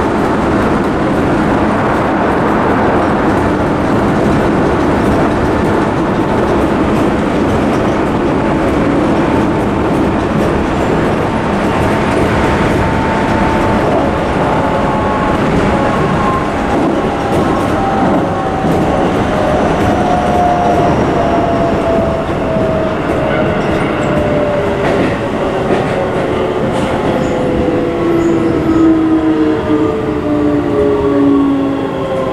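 Keisei 3700-series commuter train heard from inside the car: steady running noise of wheels on rail. Over it, the whine of the VVVF inverter and traction motors slides steadily down in pitch, most clearly in the last third, as the train brakes into a station.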